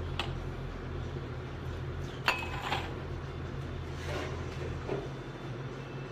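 Glass bottle and stemmed tasting glasses clinking and knocking on a glass tabletop as beer is poured, a few sharp clinks with the loudest about two seconds in. A low steady hum underneath stops about five seconds in.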